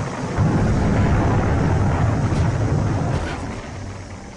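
Titan rocket exploding on the launch pad: a deep rolling rumble that swells about half a second in and fades away toward the end.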